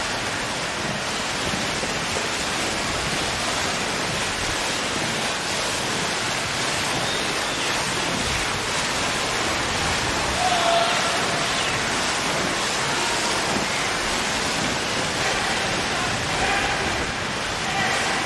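Steady, reverberant wash of splashing water from a field of swimmers racing butterfly in an indoor competition pool, with faint shouting voices around the deck now and then.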